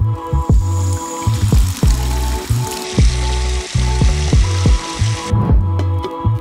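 Electronic background music with a heavy bass beat. Over it, a hiss of water pouring runs for about five seconds and cuts off suddenly near the end.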